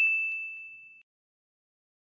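The tail of a single bright, bell-like ding, a chime sound effect on the closing logo card, fading away and cutting off abruptly about a second in.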